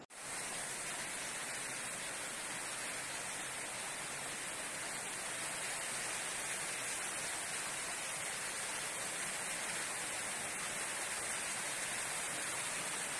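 A steady, even rushing hiss with no breaks or changes, starting suddenly at the start.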